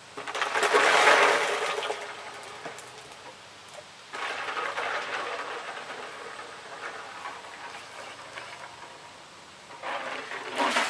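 Ice and water poured from a plastic bin into a white container, a rush with rattling ice for about two seconds. About four seconds in, a second, quieter stretch of ice water sloshing and rattling in the container starts suddenly and fades over several seconds.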